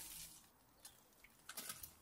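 Faint rustles and a few soft clicks as a soil-filled coir liner is pulled out of a wrought-metal wall planter rack.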